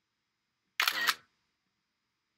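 macOS screenshot sound effect, a camera-shutter click played once about three-quarters of a second in and lasting about half a second: the sign that a screenshot of the selected area has just been captured.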